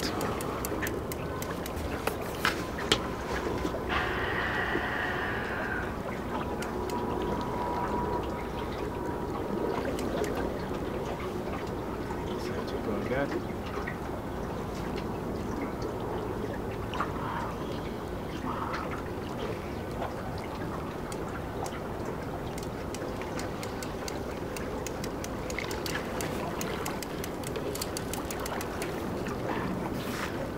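Steady river water and wind noise around a small boat while a big fish is played on a rod, with faint voices now and then and scattered light clicks.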